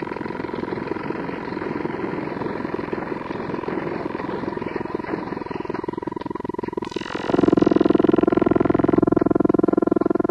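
Experimental electronic music: a Yamaha CS-5 synthesizer processing an external signal through heavy filtering and LFO modulation. A dense, rapidly pulsing rough noise with a steady high tone runs first. About seven seconds in it gives way to a louder drone rich in overtones.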